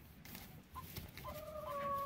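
A hen gives one long, steady call that starts about a second and a half in, after a brief short note.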